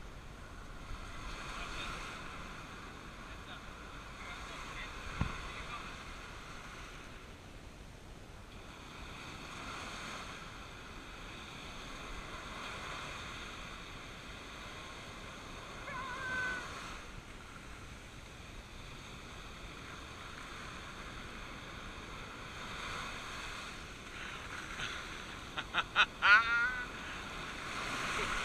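Small surf washing up a sandy beach, the noise swelling and fading as each wave comes in and draws back every few seconds. A person laughs near the end.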